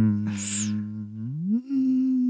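A man humming one long, drawn-out closed-mouth 'hmm', as if stalling for something to say; the note steps up in pitch about one and a half seconds in and is held there. A brief hiss comes about half a second in.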